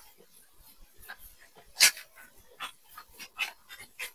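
Cloth wiping a whiteboard: short, irregular rubbing strokes, with one louder, sharper stroke a little under two seconds in.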